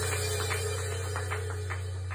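The end of a solo keyboard performance: a low note or hum holds steady under a few light, scattered clicks.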